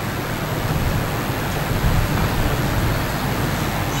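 Steady background noise, an even hiss over a low rumble, with no distinct events.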